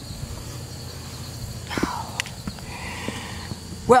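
Low steady outdoor rumble with a few soft knocks, as a horse's hoof is set down and the horse steps on a rubber mat.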